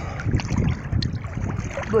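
River water sloshing and splashing irregularly around a phone held at the surface by a swimmer, with wind on the microphone.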